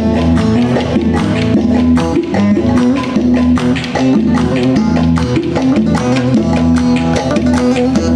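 Amplified Turkish folk dance tune (oyun havası) played loud, led by a plucked string instrument over a fast, dense percussion beat of clicks.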